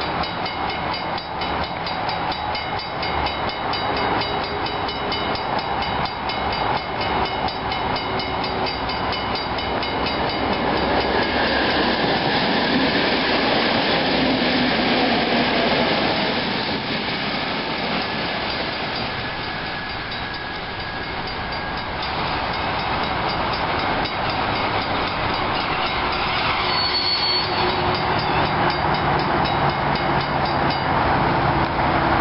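Level-crossing warning bells ring in a steady, even rhythm while an NS Sprinter electric passenger train passes over the crossing. The train's rumble swells from about ten seconds in and eases around twenty seconds. The bells stop near the end as the barriers start to rise.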